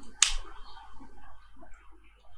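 A single sharp click about a quarter second in, a keystroke on a computer keyboard, followed by faint low background noise.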